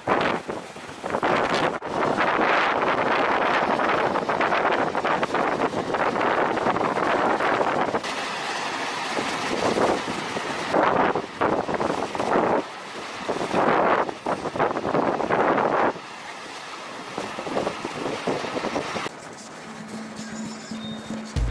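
Strong wind buffeting the microphone, over waves breaking on a rocky shore. The noise swells and drops in gusts, and changes abruptly a few times.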